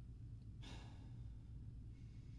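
A man sniffing a bar of soap held to his nose: one short inhale through the nose about half a second in, over a faint low hum.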